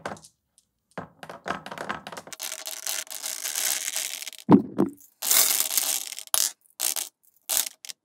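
Steel marbles clattering as they are fed into a plywood marble divider and roll down its lanes. There are scattered clicks, then a continuous rolling rattle about two seconds in, a knock, a second rattle, and a few last single clicks near the end.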